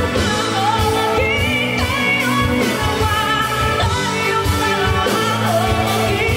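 A woman singing live into a handheld microphone, holding long notes with vibrato, backed by a live band with drums keeping a steady beat.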